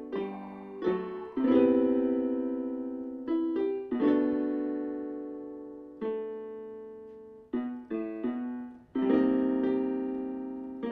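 Electronic keyboard with a piano sound, played as a slow series of chords: each chord is struck and left to ring and fade before the next, about one every second or two, with a quicker cluster of chords near the end.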